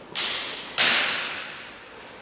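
Two sharp swishing sounds about half a second apart, the second louder, from fencers moving fast while sparring with longswords. Each one trails off in the echo of a large hall.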